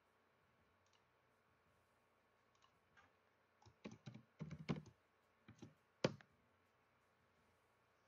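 Computer keyboard and mouse clicks with a few light knocks, in a short scattered cluster from about halfway through, the sharpest click about six seconds in; otherwise near silence.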